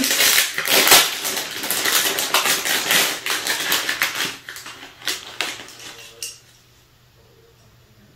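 Plastic blind-bag wrapper crinkling and rustling loudly as it is torn open and handled, with a dense run of crackles for about four seconds, then fewer, lighter rustles that die away around six seconds in.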